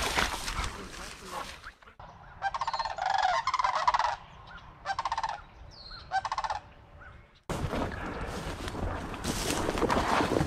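A flock of geese honking in flight overhead: a run of honks in several bursts over about five seconds, cutting in and out abruptly, with rustling noise on either side.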